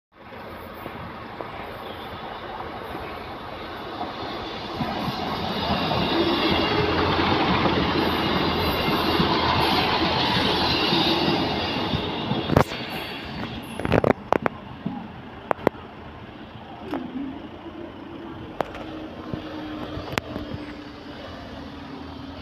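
Class 158 diesel multiple unit running through a level crossing: a broad rumble of engine and wheels builds to its loudest about halfway through and then fades. As it passes, its wheels make a run of sharp knocks over the rail joints. A steady low hum follows in the last few seconds.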